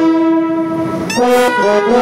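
Saxophone and trumpet playing together into a close microphone: a long held chord for about a second, then a brief noisy break with a short rising squeak, and the melody picks up again.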